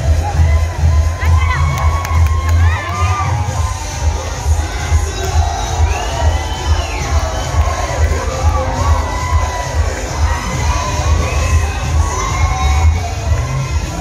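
A crowd of people cheering and shouting in high, excited voices over loud dance music with a steady, pulsing bass beat.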